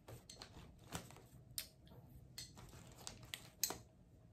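Near silence: faint room tone with a few scattered soft clicks, like light handling of small objects.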